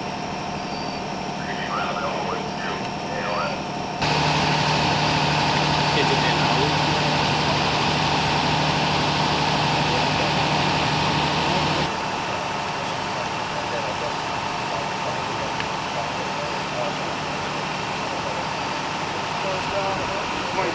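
Steady hum of an idling vehicle engine. It gets louder and stronger in tone about four seconds in, then drops back about twelve seconds in, with faint voices in the first few seconds.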